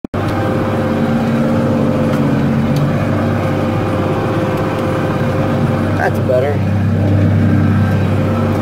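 John Deere 4450 tractor's six-cylinder diesel running steadily under load while pulling a chisel plow, heard from inside the cab. There is a brief wavering pitched sound about six seconds in.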